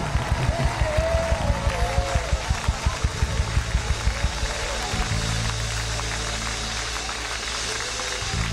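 Congregation clapping in time, about four claps a second, under a crowd din with a voice calling out; the clapping fades out about three seconds in. About five seconds in a low sustained keyboard chord comes in.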